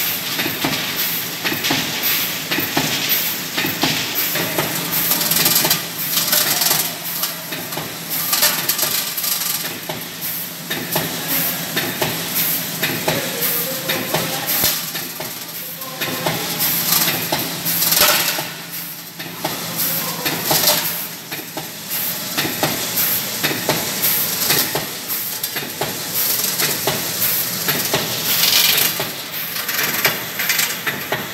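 Aluminium foil food-container production line running: a steady low hum under continual metallic clicking and clatter, with hissing.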